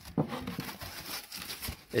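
Rigid foam insulation boards being handled and shifted, making low rustling and rubbing with a few light knocks.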